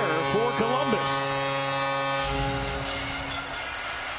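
Arena goal horn sounding a steady, held chord over crowd noise, fading out a little past halfway and leaving a low crowd rumble; a voice is heard briefly at the start.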